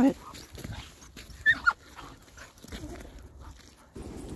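A leashed dog straining forward gives a short high whine that falls in pitch, about a second and a half in, over faint steady outdoor noise.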